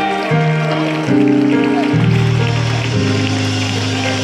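Church band's instrumental play-out at the close of a gospel song: keyboard chords held steady, changing every half second to a second, with the bass stepping down.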